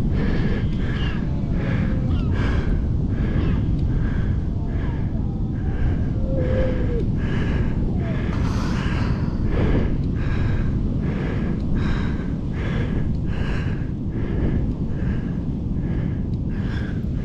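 Rapid, regular breathing, about one and a half breaths a second, over a steady low rumble of wind. About six and a half seconds in there is one brief, faint squeak.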